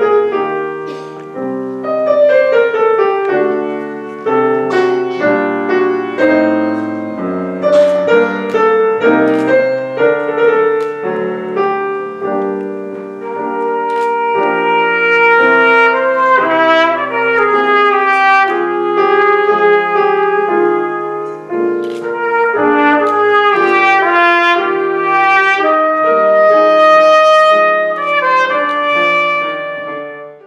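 Trumpet and grand piano playing a classical piece. The piano plays alone at first; then the trumpet comes in with long held notes over piano chords, and the piece ends near the close.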